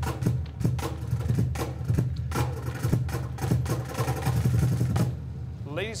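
Loud staged reveal soundtrack over a hall's sound system: a deep, steady engine-like rumble with rapid, irregular percussive hits, easing slightly near the end.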